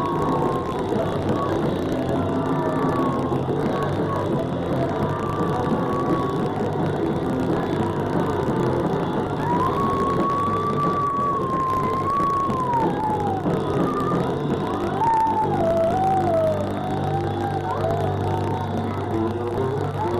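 A punk rock band playing live on drums, electric guitar and bass. Through the middle of the passage, a long wavering high tone glides up and down above the band.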